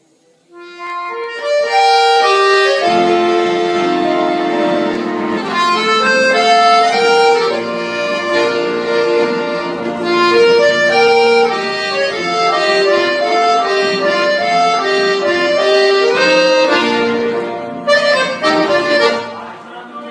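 Scandalli piano accordion played solo: a right-hand melody on the keyboard over left-hand bass and chord buttons. It starts about half a second in and eases off near the end.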